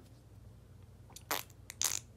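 Quiet room tone while a person pauses, then a few small mouth clicks and a breathy, whispered word in the second half.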